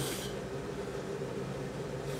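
A short breathy hiss right at the start, then a steady low hum.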